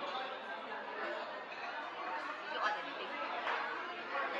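Indistinct background chatter of many diners talking at once in a restaurant dining room, steady throughout, with no single voice standing out.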